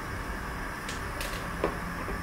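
Kitchen utensil handling: a few light scrapes and a soft knock of a wooden spoon against a plastic bowl over a steady background noise.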